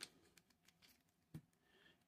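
Near silence, with a few faint clicks of a hollow plastic action figure's parts being handled, and one slightly louder click about two-thirds of the way through.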